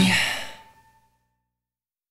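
A rock band's final chord ringing out and dying away within about a second, the cymbal wash fading first and a single held note lingering a little longer, then silence: the end of the song.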